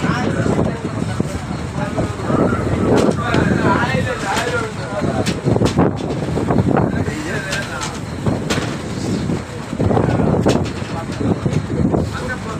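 Wind noise on the microphone over rough open sea, with people's voices calling out at intervals.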